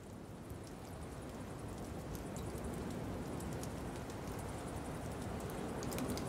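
Rain-like ambient noise with scattered ticks and crackles, slowly fading in as the atmospheric intro to a heavy metal album track.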